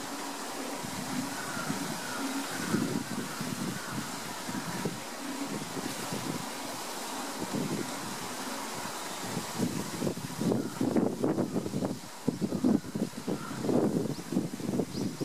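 Pool water sloshing and splashing around a polar bear as it chews a plastic tank, then lets it go and moves off through the water. The splashing grows busier and more uneven in the last few seconds.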